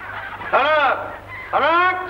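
Two loud calls about a second apart, each rising then falling in pitch.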